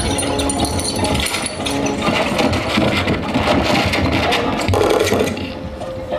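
Live electroacoustic free improvisation: a dense texture of rapid rattling clicks and noise with a few held tones, easing off just before the end.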